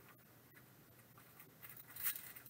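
Near silence, with faint crinkling of a foil trading-card pack being handled near the end.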